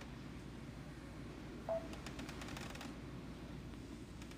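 Quiet room tone with a steady low hiss. A brief short tone sounds about a second and a half in, followed by a run of faint light clicks.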